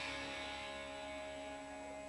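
The band's last chord ringing out and slowly fading after the drums stop, with a steady electrical hum from the amplifiers or sound system underneath.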